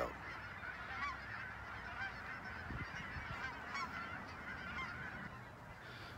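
A flock of geese honking, heard faintly as many overlapping calls that go on throughout.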